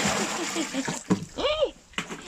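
Water splashing and pouring for about the first second, then a short rising-and-falling voice sound about one and a half seconds in.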